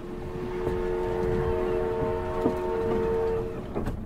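Steam whistle blowing one long, steady blast of several notes at once for about three seconds, over a low rumble and hiss.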